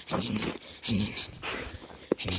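A dog making short, rough breathy sounds, about two a second, as it is petted.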